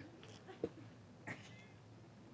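A quiet pause with faint room tone. A soft knock comes about half a second in, then a faint, short high-pitched squeak a little past one second.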